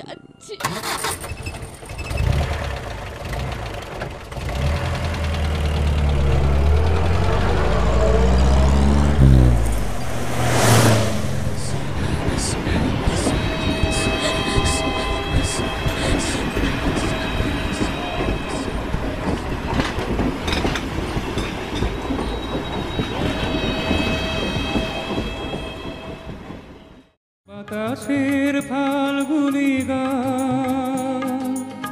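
A train passing at night. A deep rumble builds over about ten seconds and peaks in one loud sweep. Steady running noise with rhythmic wheel clicks and held tones follows, then cuts off suddenly near the end.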